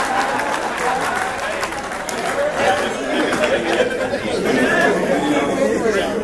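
Several people talking over one another at once, with some laughter mixed in.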